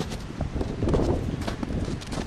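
Wind rumbling on the microphone, with uneven crunching of footsteps in packed snow.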